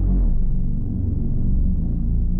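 Low synth bass playing back in a trap beat in FL Studio, holding deep sustained notes that follow the root notes, with little higher-pitched sound over it.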